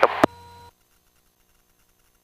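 A sharp click from the headset intercom and radio audio as the transmission ends, followed by a short steady electronic tone lasting about half a second. The audio then cuts to dead silence, with no engine sound in the feed.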